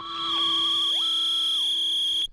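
Electronic science-fiction machine sound effect: a steady high whine over a lower steady hum, with a warbling tone that stops about halfway in and a tone that glides up, holds briefly and slides back down.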